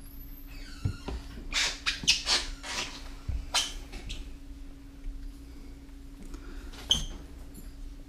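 Handling noises around a brooding reticulated python: several short hiss-like rustles in the first half, a few soft thumps, and a light metallic clink near the end, over a steady low hum.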